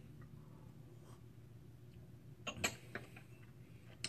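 Mostly quiet room. About two and a half seconds in come a few short clicks and a light knock as a small porcelain tasting cup is set down on a slatted wooden tea tray.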